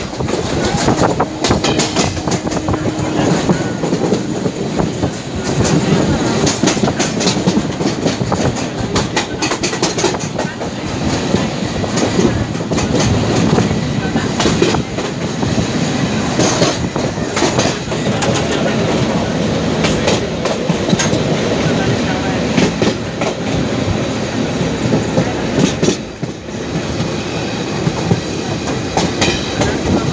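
Passenger express train running, heard from aboard: a continuous loud rumble and rattle of the coaches with repeated clacks of the wheels over rail joints.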